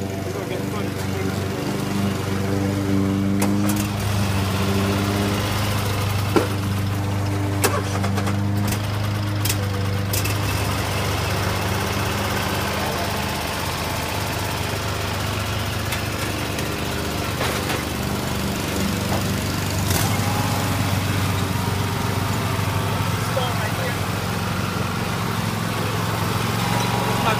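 Husqvarna riding lawn mower's engine running steadily at an even pitch while it is driven, its cutting blades not yet engaged. A few sharp clicks sound over it in the first ten seconds.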